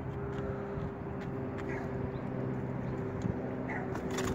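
A machine humming steadily, several steady low tones held throughout, with a few faint clicks over it.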